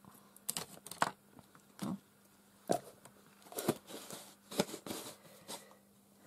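Scattered light clicks, taps and crinkles of a plastic squeeze tube of gesso being handled, squeezed and set down on the craft table.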